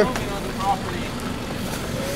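Steady outdoor street noise, an even hiss and rumble with no distinct events, with a short faint snatch of a voice under a second in.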